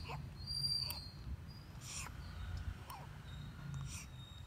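Five-day-old baby feeding from a milk bottle: faint sucking and swallowing clicks about once a second.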